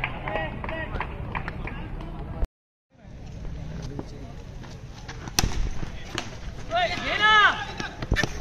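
Players' voices calling across a cricket ground, with the sound cutting out for half a second about two and a half seconds in. A single sharp crack of a bat striking a tennis ball comes a little past five seconds, followed by a loud shout.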